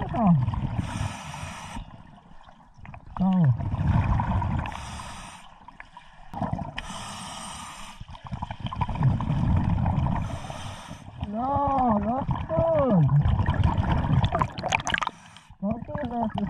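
Scuba breathing underwater: four short hissing breaths drawn through the regulator, with low rumbling exhaled bubbles between them. A muffled voice sounds a few times through the mouthpiece.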